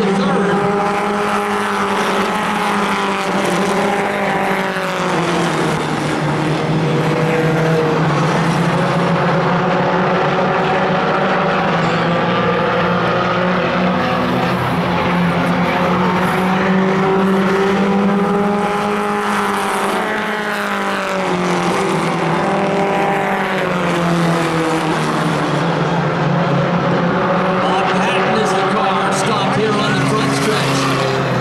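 A pack of four-cylinder stock cars racing on a short oval track, several engines at once rising and falling in pitch as they accelerate down the straights and lift for the turns. The sound is loud and continuous.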